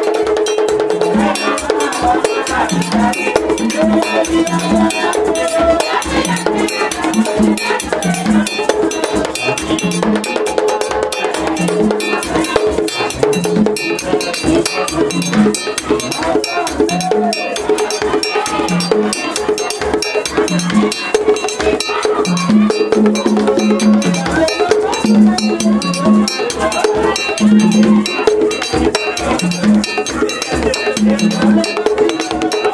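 Haitian Vodou ceremonial music: a metal bell struck in a fast, steady pattern over hand drums, with voices singing along.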